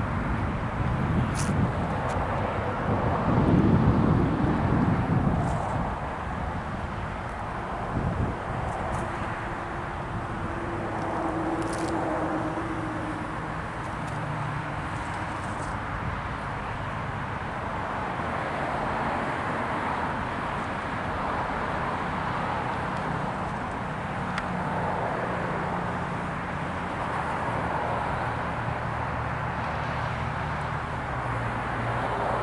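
Steady outdoor background noise, a low rumble and hiss, with a louder swell about three to five seconds in.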